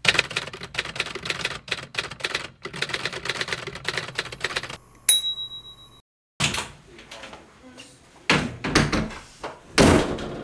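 Typewriter keys clacking rapidly for about five seconds, then a single ringing ding like a typewriter's carriage bell. After a short silence come a few heavy thuds, the loudest near the end.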